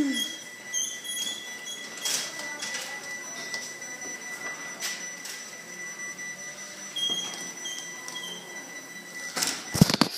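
Overhead garage door opener running, a steady mechanical whir with scattered clicks, and a loud thump near the end.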